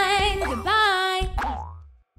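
The end of a children's song jingle: a long sung note that stops about half a second in. It is followed by cartoon boing sound effects, the last one falling in pitch and fading away.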